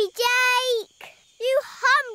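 A baby vocalising: one drawn-out, fairly level sound of about half a second, then a couple of short babbled sounds near the end.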